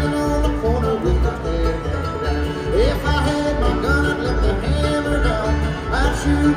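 Live bluegrass band playing an instrumental passage on acoustic guitars and upright bass with other string instruments, over a steady pulsing bass line.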